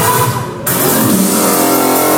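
Dubstep played loud over a club sound system. About half a second in, the track briefly drops out to a thin, filtered sound, then comes back with a synth bass sliding down in pitch, a growl that sounds like an engine revving.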